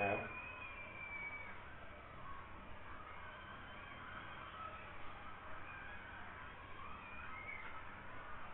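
Quiet classroom room tone: a faint steady background hiss, with a thin high tone sliding slightly down in the first second or so.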